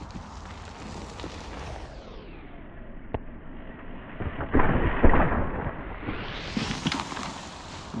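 An electric mountain bike rushing down a dirt trail and jumping a lip close past the camera, the sound slowed and muffled for slow motion: a dull rushing rumble, loudest about five seconds in as the bike goes by.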